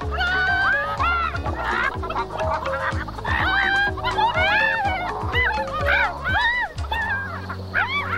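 Cartoon hens clucking over and over, many short rising-and-falling calls overlapping, over a bouncy music score. About seven seconds in the music changes to longer held notes.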